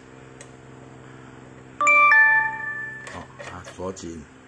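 Two-note doorbell chime ringing ding-dong, a higher note then a lower one, about two seconds in. It sounds over a steady low hum.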